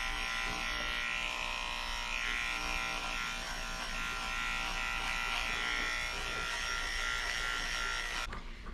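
Cordless electric pet clippers running with a steady buzz while they shave out matted fur behind a dog's ear.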